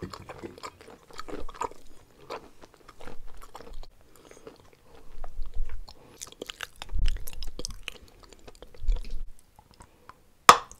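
Close-miked chewing of a mouthful of white chalk: irregular bursts of crisp crunching mixed with wet, pasty mouth sounds, with a few dull thumps in the middle and near the end.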